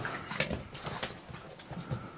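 A pug scrambling about on a laminate floor: a handful of sharp clicks and knocks from its claws and paws.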